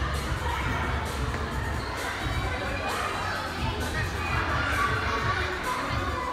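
Hubbub of many children shouting and calling at once in a large indoor play hall: a steady crowd din with no single voice standing out.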